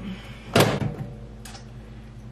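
A microwave oven door shutting with a single sharp thump about half a second in, followed by a faint click.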